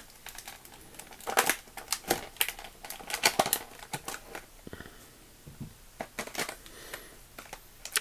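Stiff plastic blister packaging being pried and pulled away from its cardboard backing card: a run of irregular crackles and clicks, quieter for a moment about halfway through.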